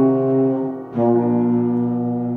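Euphonium and piano playing the closing notes of a piece: one held euphonium note, then a new sustained note starting about a second in.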